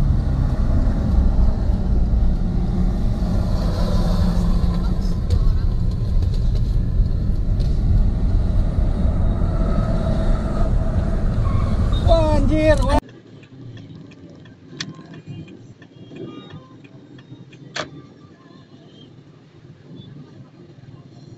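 Loud low rumble of a moving car heard from inside the cabin on a phone microphone, with voices over it. About 13 seconds in it cuts off sharply to much quieter traffic noise with a few faint clicks.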